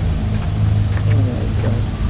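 A steady low droning hum from the soundtrack, with a short stretch of hissy outdoor field noise laid over it that holds a few faint, brief gliding tones.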